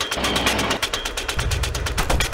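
Fast, even mechanical ticking, about fifteen ticks a second, over a low rumble that shifts in level about a third of the way in and again just past the middle.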